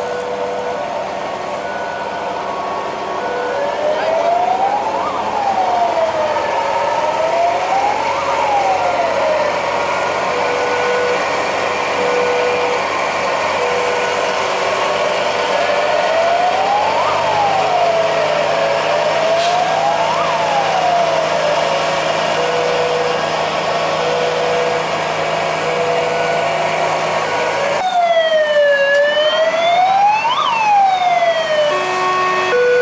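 Fire engine siren wailing in slow rising and falling sweeps, a few seconds apart, over a steady background rush. Near the end a louder siren wail sets in.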